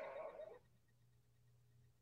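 Near silence on a video call: the faint tail of a spoken "um" in the first half second, then the line goes quiet.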